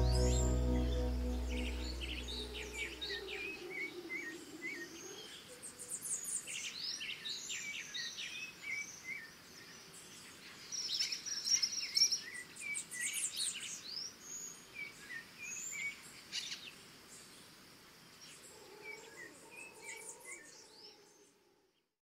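Closing music fading out over the first few seconds, then many birds chirping and calling, in scattered bursts that fade away at the very end.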